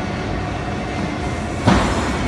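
Steady background noise of a busy exhibition hall, with a short rushing burst of noise near the end.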